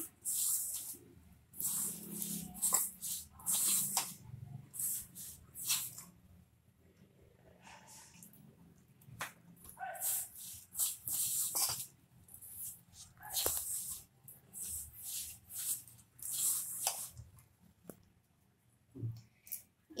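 Hands rubbing and kneading crumbly maida dough for mathri against a steel bowl: irregular bursts of gritty rustling and scraping, with a quieter pause near the middle.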